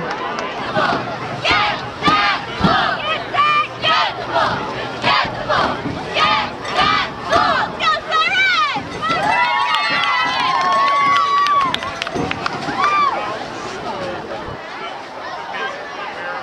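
A crowd of voices shouting and cheering in quick repeated bursts, then long drawn-out cheering calls about nine seconds in that die down over the last few seconds.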